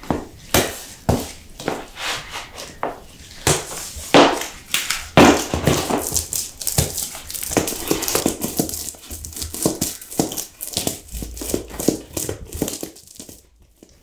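Thick, sticky tar being worked by hand and with a paint roller on a plywood board: a dense, irregular run of wet, sticky crackles and squelches. It dies down just before the end.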